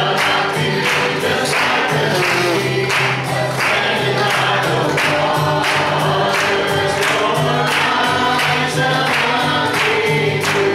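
Acoustic guitar strummed in a steady beat, about two strokes a second, under a man's singing voice in a gospel song.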